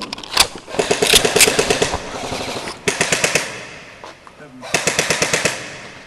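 Airsoft guns firing rapid full-auto bursts: a single shot, then three bursts, about a second in, about three seconds in and near five seconds.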